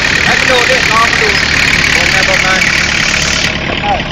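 A vehicle's engine running steadily while driving, under constant road noise, with short scattered bits of a voice over it.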